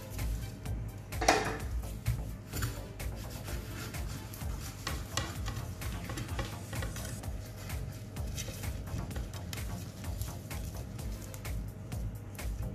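Crackling, rustling handling noise with light scraping as plastic-gloved hands work a sponge cake layer on a plate, with a louder knock about a second in. Background music plays faintly underneath.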